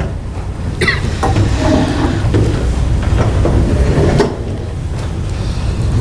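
Steady low rumble of room noise picked up by the meeting microphones, with faint indistinct talk mixed in and a brief click about a second in.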